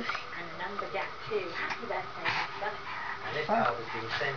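A young child's voice murmuring softly in short, wordless bits, quieter than her talk around it.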